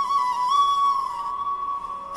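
Intro music: a solo flute melody, a long held note with small ornamental turns that steps a little lower midway and softens near the end.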